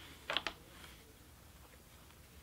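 A short clatter of a few sharp wooden clicks about half a second in, from a rigid heddle loom being handled during plain weaving, then only faint room tone.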